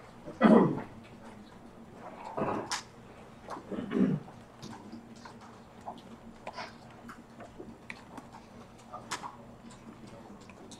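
Light, scattered clicks of laptop keys being pressed, with three short, louder voice-like sounds that fall in pitch in the first four seconds.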